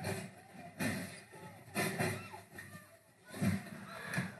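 Faint voices with a few short bursts of noise, roughly a second apart.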